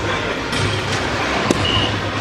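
A soft-tip dart hits the electronic dartboard with one sharp click about one and a half seconds in, followed at once by a short electronic beep from the machine registering the hit as a single 18. Steady hall noise runs underneath.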